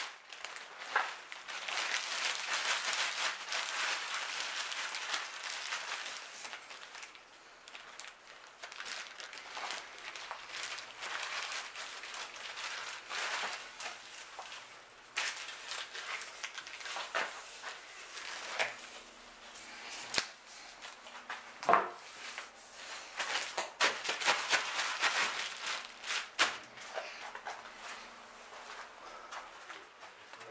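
Scratchy rubbing and plastic crinkling as hands work along a painted wooden mast, with many short sharp clicks throughout.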